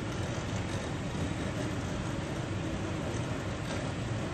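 Steady low roar of glass-studio equipment, running evenly without a break.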